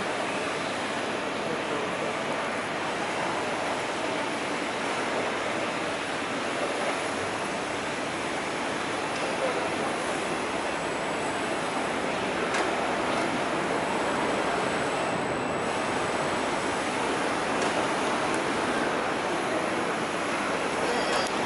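Steady, even rushing background noise of a city building site, with a few faint clicks and no distinct machine standing out.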